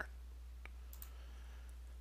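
A single soft computer key click about two-thirds of a second in, with a couple of fainter ticks after it, over a steady low hum: the key press that confirms the installer menu choice and moves it to the next screen.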